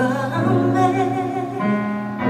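A young woman singing a slow gospel song live into a microphone, holding wavering notes with vibrato over a sustained instrumental backing.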